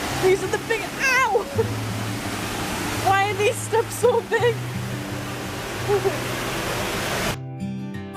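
Steady rush of a waterfall's churning water, with background music laid over it: a steady bass line and a wavering voice line. Near the end the water sound cuts off suddenly, leaving only the music.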